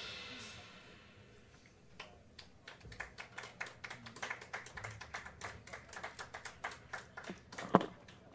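The jazz piano trio's final chord rings out and dies away over the first second. From about two seconds in, a small audience applauds with quiet, scattered clapping.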